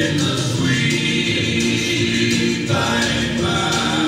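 Choir singing a slow gospel hymn in long held notes.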